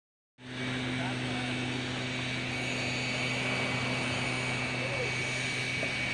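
Beach ambience: a steady even hiss of small surf washing on the shore, distant voices of people, and a constant low mechanical hum.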